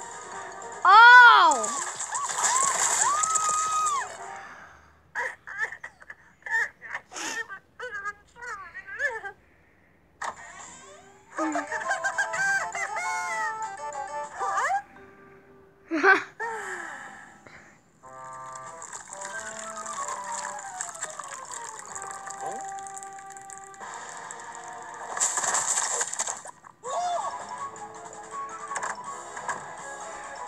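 Cartoon soundtrack: music with a character's high, wavering vocal cry about a second in, a run of short clicks a few seconds later, and more bending character vocals and sound effects, including a long falling run of tones in the second half.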